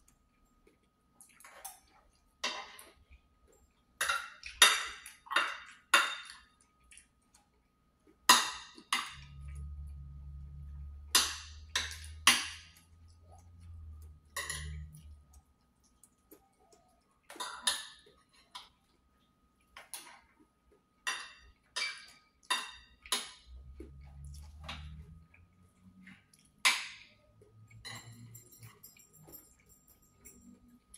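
A metal fork clinking and scraping against a plate as fried rice is scooped up, in a string of sharp, irregular clinks through the whole stretch.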